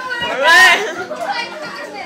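Boys yelling and shouting, with one loud high-pitched yell about half a second in.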